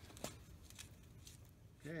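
Faint metal clicks and light handling of a large spindle nut being turned off the spindle threads by hand, with one clearer click about a quarter second in.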